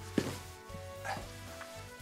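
Low background music with held tones. Just after the start comes a single short slap as a tossed beer is caught.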